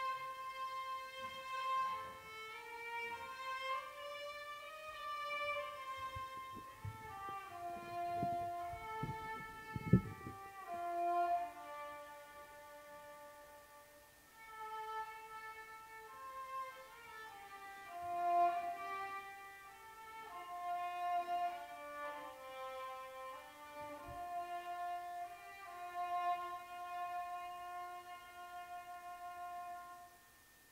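Solo violin playing a slow melody, one note at a time, stopping near the end. A sharp thump sounds about ten seconds in.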